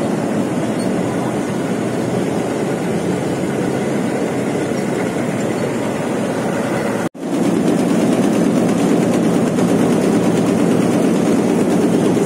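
Tea factory machinery running steadily: conveyor belts carrying dried black tea toward the grading and sorting machines. There is a brief break about seven seconds in, after which the noise is slightly louder.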